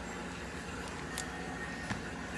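Quiet steady background noise with two light clicks, about a second in and just before the end, as nail stamping plates are handled.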